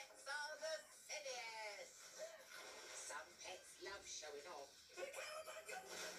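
Vocals over backing music playing from a television's speaker, heard in a small room.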